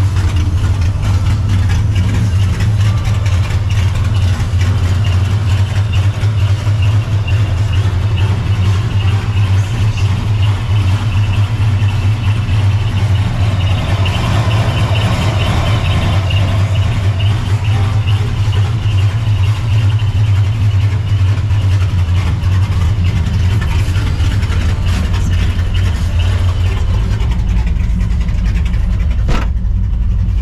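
Cammed, Procharger-supercharged 5.4 2V V8 of a 1999 Mustang GT idling steadily. The idle sound grows brighter for a couple of seconds around the middle. A single thump, likely the car door shutting, comes just before the end.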